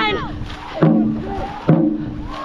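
Dragon boat drum struck in a steady race rhythm, a beat a little under a second apart, each beat ringing on. A falling shout from the crew carries over the start, over the wash of the paddles.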